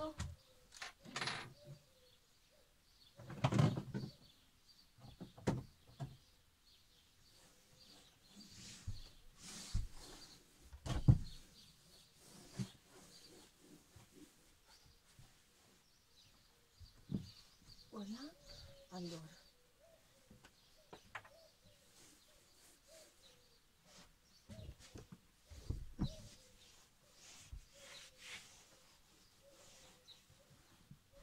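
Scattered knocks, bumps and rubbing of someone cleaning by hand low down by a camper's open fridge; the loudest knock comes about eleven seconds in.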